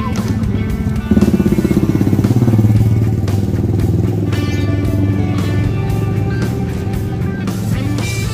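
A small motor scooter's engine running as it rides slowly past close by, growing loud about a second in and easing off after a few seconds, over background music.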